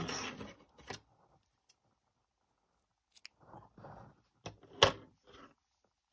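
Scissors snipping through a yarn end, one sharp snip about five seconds in, with a few faint clicks and rustles of the crochet work being handled before it.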